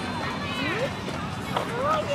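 Several children's voices talking and calling out at once, high-pitched and overlapping, over a steady background noise.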